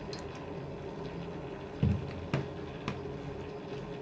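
Cooking oil pouring in a thin stream into a steel saucepan, over a steady low hum. A dull thump comes just under two seconds in, followed by a couple of light clicks.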